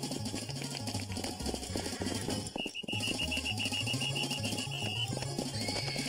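Cartoon soundtrack music with a stepping bass line; about two and a half seconds in, a rapid high-pitched pulsing tone, about eight pulses a second, joins it for some two and a half seconds and then stops.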